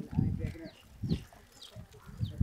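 Faint farmyard animal calls with short high chirps, and two low thuds: one just after the start and one about a second in.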